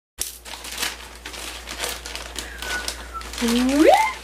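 Plastic packaging crinkling and rustling as a courier pouch and its inner wrap are pulled open by hand, in irregular bursts. Near the end a woman's voice rises in pitch.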